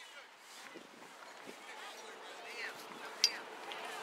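Faint, distant voices calling across an open soccer field, with one sharp knock a little after three seconds in.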